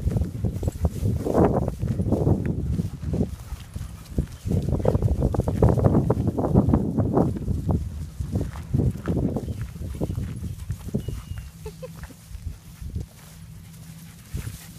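Footsteps crunching on a gravel path, a quick irregular run of steps, loudest in the middle.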